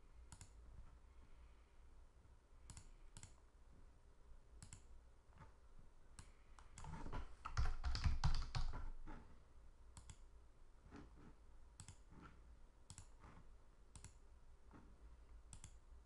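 Faint computer mouse clicks, one every second or so, with a short burst of rapid keyboard typing about seven to nine seconds in, the loudest part.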